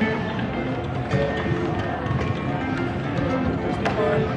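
Music playing amid the chatter of a street crowd, with footsteps and a few sharp clicks, the loudest near the end.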